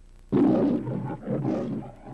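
The MGM lion logo's recorded lion roar: a lion roars twice in quick succession, starting suddenly about a third of a second in.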